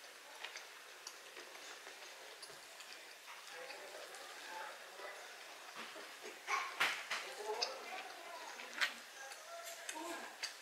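Close-miked eating sounds: chewing and mouth noises, with sharp clicks and scrapes of a metal fork and knife against each other and the food, loudest about seven seconds in.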